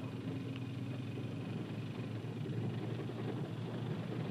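Steady low rumble of a car driving on an unpaved road, heard from inside the cabin: engine and road noise.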